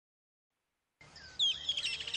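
Silence for about a second, then birds chirping: a few short downward-sliding tweets followed by a rapid twittering trill.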